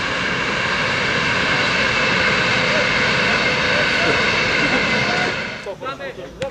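Loud, steady engine and wheel noise of a Hellenic Railways diesel locomotive and its carriages passing close by, dropping away sharply near the end.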